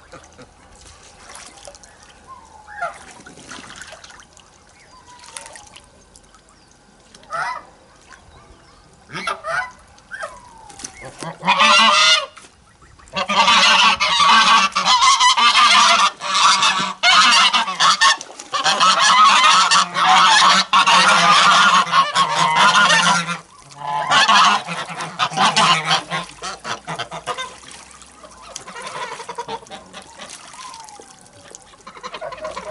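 Domestic geese honking: a few single calls at first, then, about halfway in, a loud chorus of honking from several geese at once that runs for about twelve seconds before dying down near the end.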